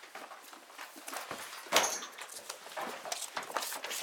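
Paper pages of thick document bundles being leafed through and turned, in short irregular rustles, the loudest a little under two seconds in.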